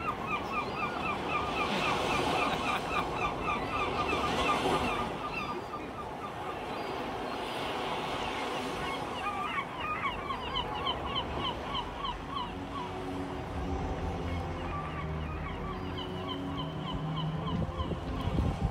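A flock of geese honking in rapid, overlapping calls over a wash of water-like noise. Low sustained tones come in during the second half.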